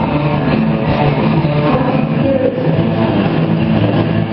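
Live rock band playing loud and steady with electric guitars, bass and drums, with no vocal line standing out.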